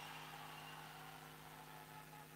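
Near silence: a faint, steady low hum with a light hiss.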